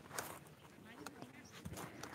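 Quiet outdoor background with scattered faint clicks and a soft low thump near the end: footsteps and phone handling as the person filming walks along a garden path.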